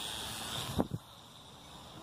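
Small electric motor and propeller of a homemade RC slow-flyer running close by, a steady high whine with some noise. A sharp knock comes a little under a second in, and the motor sound cuts off suddenly, leaving only a quieter hiss.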